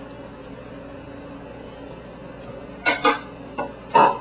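Flour being poured quietly into a mixing bowl, then a few short knocks of the plastic container against the bowl and counter, two close together about three seconds in and another at the end as it is set down.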